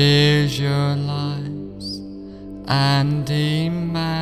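Meditative background music: a low voice chanting long held notes over a steady drone, in two phrases, one at the start and one beginning about two-thirds of the way through.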